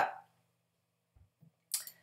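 Mostly near silence: room tone, with a short noisy sound near the end.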